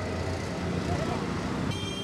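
Street traffic noise, steady, with a brief high tone near the end.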